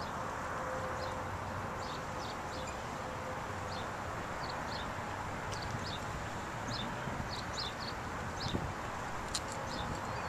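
Outdoor parking-lot ambience: a steady hum of distant traffic with small birds chirping in short, high calls throughout.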